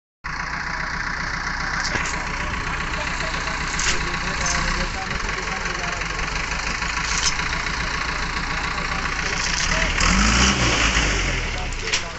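A heavy vehicle engine running steadily, revving up and back down once near the end, with people talking over it and a few short knocks.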